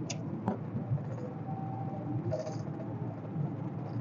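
Cabin noise inside a 1987 VW Fox 1.6 automatic on the move: a steady low drone of engine and road. A single click comes about half a second in, and a faint thin whine holds for about a second in the middle.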